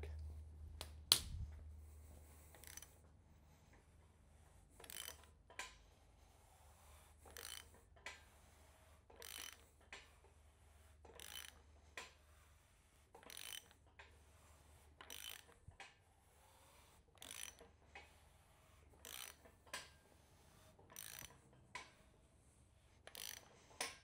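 A ratchet wrench on the crankshaft bolt of a small-block Chevy turns the engine over by hand, giving faint short runs of pawl clicks about every two seconds as the handle swings back for the next pull. The engine is being rotated to check the new double-roller timing chain's clearance.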